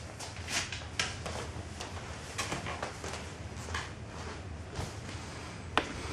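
Handling noise: rustling and light knocks as hands move tools about on a glass sheet, with one sharp click near the end.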